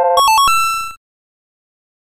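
Short electronic chime jingle, the answer-reveal sound effect of a quiz: a held chord gives way to a few quick bright notes and one held note, then it cuts off suddenly about a second in.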